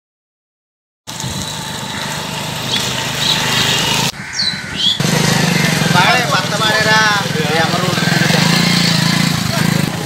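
Silence for about the first second, then a motorcycle engine running as the bike rides off down a rough road. About four seconds in the sound cuts to a steady engine hum of motorcycles on a street, with people's voices over it.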